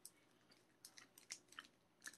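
Near silence with faint chewing: a few soft, quiet mouth clicks from a person chewing a soft, chewy protein bar with no crunch.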